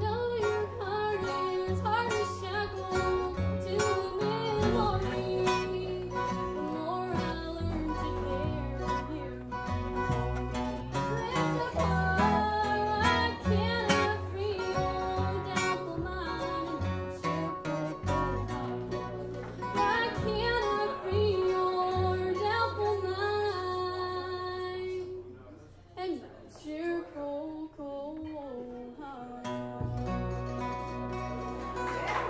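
Live bluegrass band playing: acoustic guitar, mandolin and upright bass behind a woman singing. The music drops away briefly about 26 seconds in, then picks up again.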